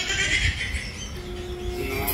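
The soundtrack of a film clip playing through a laptop speaker: background music with a single short held note about halfway through, over a low rumble.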